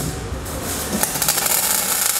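MIG welding arc crackling as a steel chassis tube is tack-welded, the crackle growing louder about a second in.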